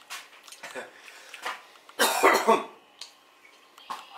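A man coughing and breathing hard, with short puffs of breath and one loud cough about two seconds in, from the burn of a large habanero pepper he has just eaten.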